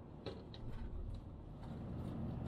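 Faint low rumble of a Toyota Proace campervan's road and engine noise heard from inside the cab while driving, with a few faint, irregular ticks.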